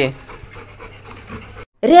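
A dog panting faintly.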